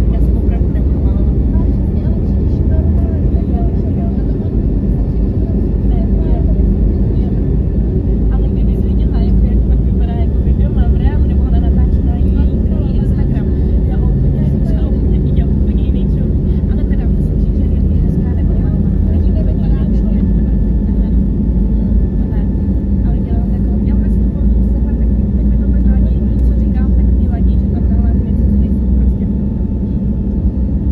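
Cabin sound of an Airbus A321neo on its takeoff roll: loud, steady engine and runway rumble heard from a seat beside the wing.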